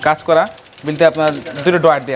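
A person talking, with a few light clicks mixed in.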